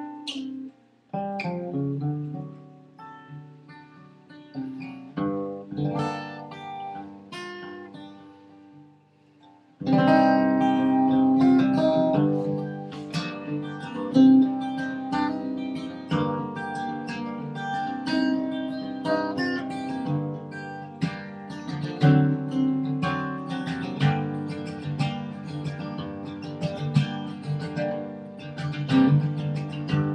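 Solo acoustic guitar playing the instrumental introduction to a folk song. It opens with about ten seconds of quiet, sparse picked notes, falls nearly silent for a moment, then moves into fuller, louder playing.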